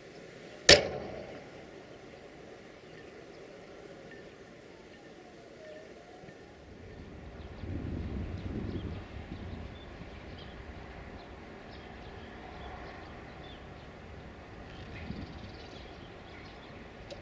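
Railway station sound around a standing electric locomotive and its train: a single loud, sharp crack about a second in, then a low rumble that swells for a couple of seconds around the middle.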